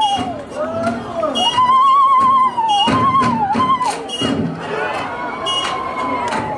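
Live music for a Zulu dance: a high, wavering held note that slides down and comes back several times, over irregular sharp beats.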